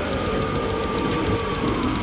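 Passenger train running on the rails, heard from inside the carriage: a steady rumble with a thin whine that slowly falls in pitch.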